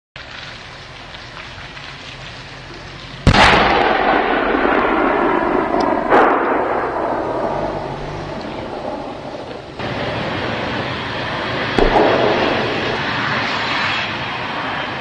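Main battle tank driving on a road, its engine and tracks running loud with a rough, noisy roar. The loudness jumps suddenly three or four times and each time eases off slowly.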